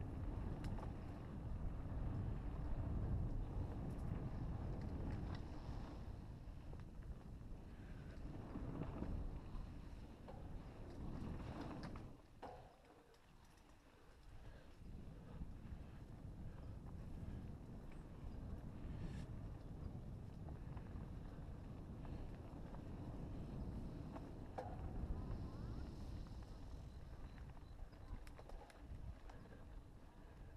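Riding noise from a mountain bike on a dirt trail: a steady low rumble of wind on the camera microphone and tyres rolling over dirt, with a few light clicks and rattles. It dips quieter for a couple of seconds about halfway through, then the rumble returns.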